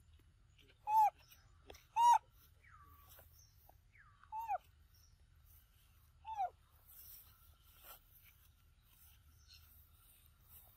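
Baby macaque giving short, high-pitched cries, each falling in pitch, about one, two, four and a half and six seconds in, the third one doubled, with fainter sliding squeaks in between.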